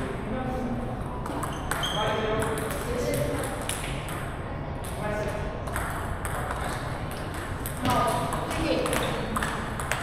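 Table tennis balls clicking off paddles and tables in quick, irregular strokes from rallies at several tables at once, with people talking in the background.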